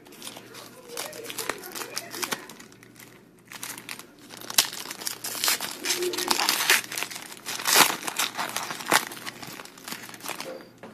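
Hands crinkling and tearing a foil trading-card pack wrapper, with the cards rubbing and sliding against each other. Irregular crackling, denser and louder in the second half.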